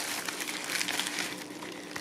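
Plastic bubble mailer crinkling faintly as it is handled and pulled open, the rustles thinning out toward the end.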